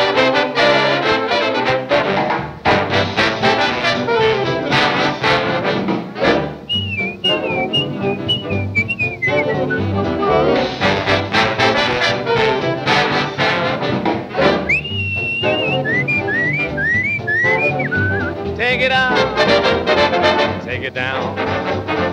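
Instrumental break of a swing band record: trombones and trumpets play over a steady rhythm section. Twice a high, warbling bird-like line rises above the band.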